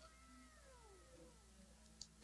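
Near silence, with a faint pitched sound gliding slowly downward over about a second and a half.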